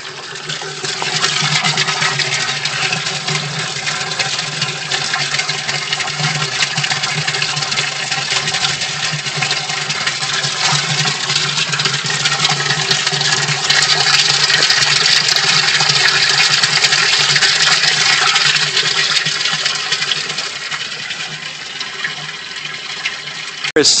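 Water from an aquaponics grow bed's running bell siphon pouring and splashing steadily into the fish tank below, the falling stream aerating the tank water. It grows heavier about a second in, is fullest in the middle and eases off a little near the end.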